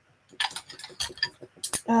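Wooden drop spindles clicking and knocking against one another as they are handled and shifted in a basket: a scatter of light clacks, the loudest just before the end.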